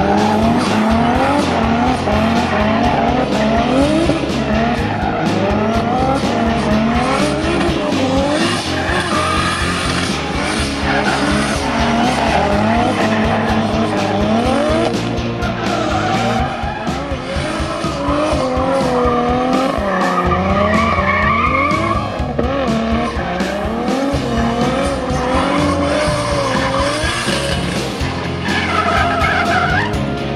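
BMW drift car's engine revving up and down over and over as it slides through a drift, with tyre noise on the wet tarmac. Background music runs underneath.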